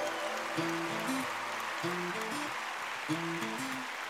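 Background music: a soft melodic phrase of held notes that repeats about every second and a quarter, over a steady hiss.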